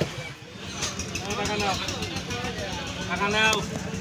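People talking, over a steady low pulsing rumble of an idling engine.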